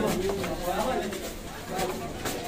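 Indistinct talking from a group of people, no single voice clear.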